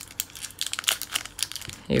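Foil Pokémon booster pack wrapper crinkling as fingers tear it open, a quick run of irregular crackles.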